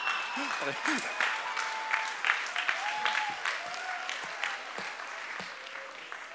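Audience applause with some laughter, a dense patter of hand claps that thins out and grows quieter over the seconds.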